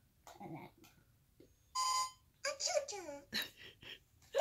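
Minnie Mouse toy cash register's handheld scanner giving one short electronic beep about two seconds in as it reads an item's tag.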